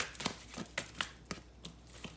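A thick deck of illustrated cards being shuffled by hand: about half a dozen quick papery clicks and flicks of card edges, thinning out toward the end.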